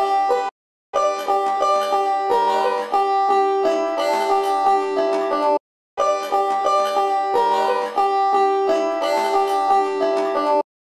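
Five-string banjo picked in a fast run around a G chord, high notes on the first and second strings against the open fifth-string drone. The playing stops dead twice for a split second, about half a second in and again just before six seconds.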